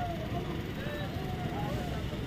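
Faint street background: a low steady rumble with a few faint, distant voices.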